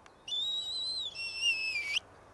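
A person whistling two drawn-out notes: a high note held for nearly a second, then a lower one that ends with a quick upward flick.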